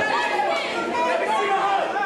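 Overlapping voices of several people talking at once: crowd chatter, with no single voice standing out.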